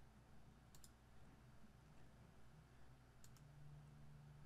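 Faint computer mouse clicks over near silence: a quick pair about a second in and another pair a little after three seconds.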